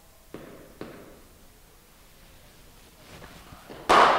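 Two light taps of a cricket bat on the pitch early on, then near the end one sharp crack of the bat striking the ball, echoing in the indoor net.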